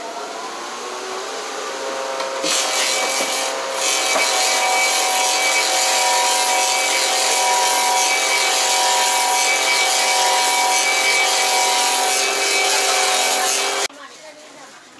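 Wooden-clog copy-carving machine running up and then cutting wood as its knives follow a model clog. A steady machine whine sits under loud cutting noise, rising in pitch at first and then holding steady, and it cuts off suddenly near the end.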